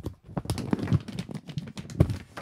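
Clear plastic bag crinkling and rustling as a cable is pulled out of it, with irregular sharp clicks and knocks.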